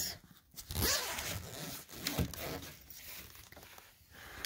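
Zipper on a mesh pop-up insect emergence cage being unzipped in several pulls.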